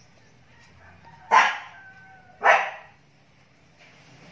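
A dog barks twice, two short barks a little over a second apart.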